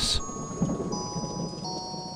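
Rain sound effect with a low rumble of thunder, under soft background music of held bell-like notes that come in one after another.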